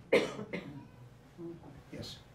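A person coughing: one sharp, loud cough just after the start, then a second, softer one about half a second in.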